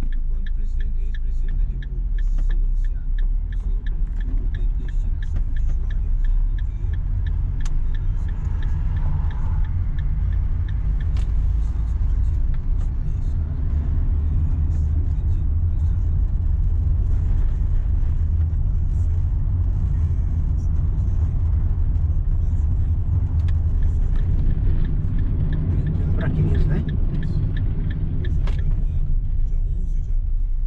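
Steady low rumble of a car's engine and tyres heard from inside the cabin while driving on city streets.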